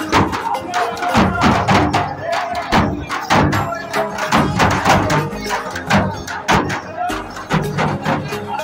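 Gond dance drumming: large barrel drums beaten with sticks in a fast, steady rhythm of about three strokes a second, with a pitched melody and crowd voices over it.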